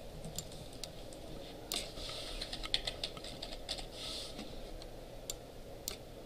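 Computer keyboard typing: irregular, fairly faint keystrokes, clustered in quick runs between short pauses, over a steady low room hum.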